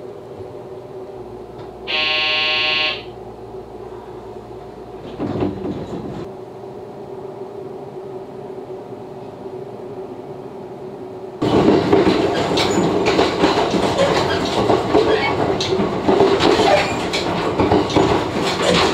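Inside a JR West 227 series electric train: a steady low electrical hum while the train stands, broken about two seconds in by a loud steady tone lasting about a second, and a thump about five seconds in. From about eleven and a half seconds in the sound suddenly becomes the loud running noise of the moving train, with rail-joint clatter and rattles.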